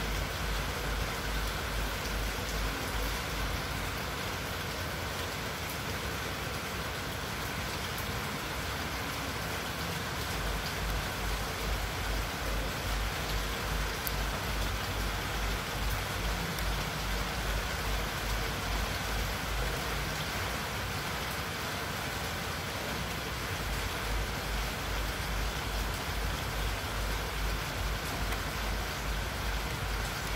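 Steady, even background hiss with a fluttering low rumble underneath and no distinct events.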